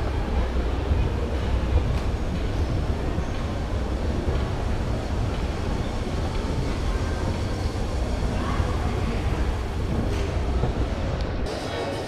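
Steady low rumble of a moving escalator being ridden, with indistinct crowd murmur behind it. The rumble drops away near the end.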